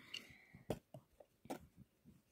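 Faint, scattered light taps and ticks, about six in two seconds, from a wooden tool working loose substrate in a plastic enclosure.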